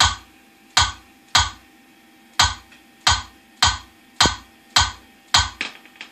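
A series of about ten sharp percussive hits, irregularly spaced roughly half a second to a second apart, each dying away quickly, over a faint steady hum.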